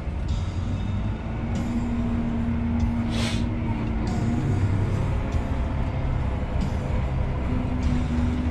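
Engine and drivetrain of a John Deere 7R 290 tractor heard from inside its cab, a steady low drone while driving slowly across a field. A short hiss comes about three seconds in.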